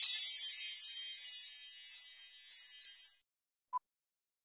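Shimmering, bright chime sound effect, like a wind chime, for a logo sting, fading away over about three seconds. Near the end comes one short, faint beep, the first of the once-a-second beeps of a film-countdown leader.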